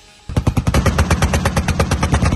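A Gepard self-propelled anti-aircraft gun's twin 35 mm autocannons firing one long, rapid burst of evenly spaced shots, starting about a quarter second in.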